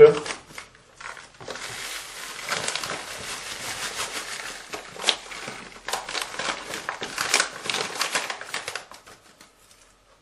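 Bag of tile jointing powder (grout) crinkling as it is handled and the powder poured into a mixing bowl: a steady rustling hiss with scattered crackles, dying away near the end.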